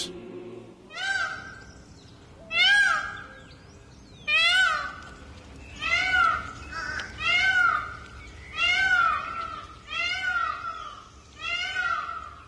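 A bird calling loudly and repeatedly, about eight calls roughly a second and a half apart, each a short cry that rises and then falls in pitch.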